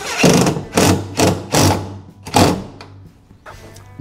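Cordless drill driving stainless self-tapping truss head screws through plywood into the aluminum boat, in about five short bursts over the first two and a half seconds.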